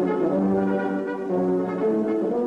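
Brass music: held chords that change every half second or so.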